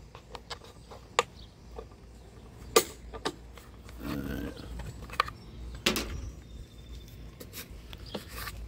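Scattered, irregular plastic clicks and taps as fingers turn the knurled tightening knob in a roof-rack crossbar foot, over a low steady background rumble.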